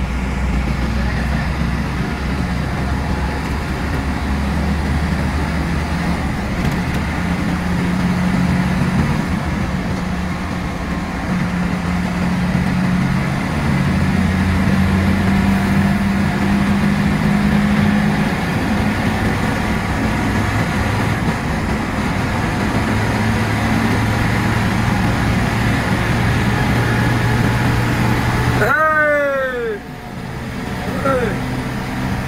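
Coach engine and road noise heard from inside the cab while the bus runs at highway speed. The engine's low hum shifts in pitch as it pulls and eases. Near the end the sound briefly drops out and a short tone glides up and down.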